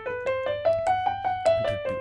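Digital piano playing a single-note major-scale run in an even rhythm, about five notes a second, climbing and then coming back down.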